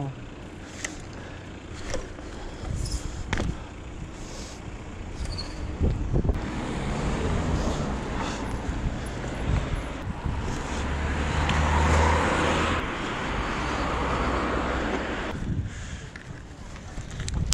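Mountain bike rolling over paving stones with a few light clicks and rattles, while road traffic swells alongside: a motor vehicle passing, loudest about twelve seconds in and fading away near the end.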